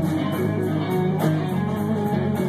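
Live rock trio playing an instrumental passage: electric guitar over bass guitar and drums, with steady cymbal strokes several times a second.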